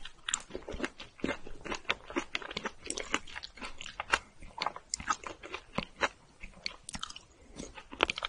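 Close-miked chewing of a soft, sticky rice cake: a dense, irregular run of wet clicks and smacks from the mouth, several a second.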